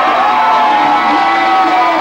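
Live band with electric guitar playing long held notes over the voices of a crowd.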